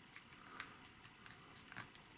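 Near silence with a few faint clicks: the side volume buttons of a Nokia 5710 XpressAudio phone being pressed.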